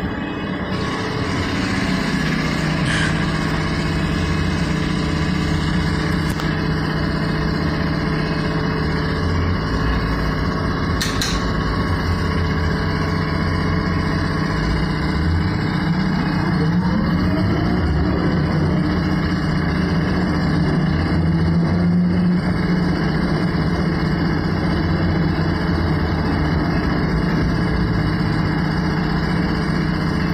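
Cabin noise of a Škoda 14Tr trolleybus on the move: a steady hum and rumble from the running gear and body. A rising whine from the electric drive comes around the middle, and there is a sharp click about eleven seconds in.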